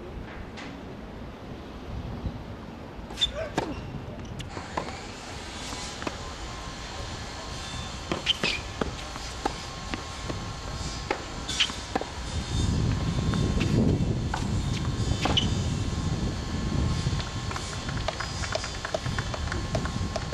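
Tennis ball struck by rackets and bouncing on a hard court, a sharp pop every few seconds. A low vehicle rumble builds in the second half.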